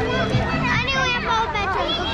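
Children's voices and chatter in a busy crowd, several high-pitched voices talking and calling over one another.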